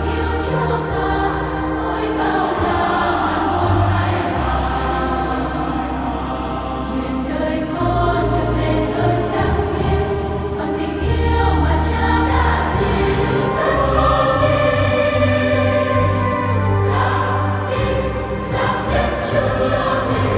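Large mixed choir singing a Vietnamese Catholic hymn together in Vietnamese, held notes moving steadily from chord to chord.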